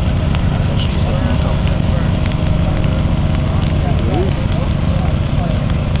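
A steady low rumble with faint scattered crackles from dry grass and leaf litter burning at a low creeping fire line.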